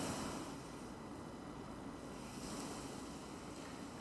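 Quiet room tone: a faint, steady hiss and hum with no distinct sound standing out.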